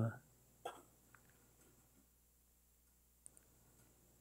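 Mostly quiet room tone. A short vocal sound comes just under a second in, and a few faint clicks follow later, from laptop keys or a mouse being worked.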